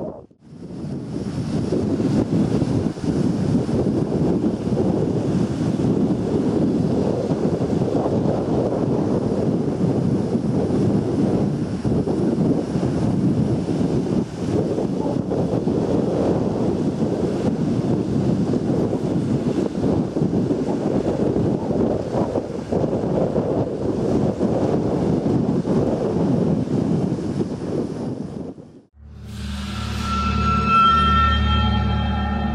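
Wind blowing across the camera microphone over small waves breaking and washing on a beach: a steady rushing noise that cuts off shortly before the end.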